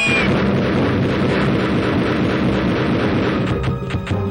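Film soundtrack: a steady rushing noise under music. Near the end a quick rhythmic beat of about four hits a second comes in.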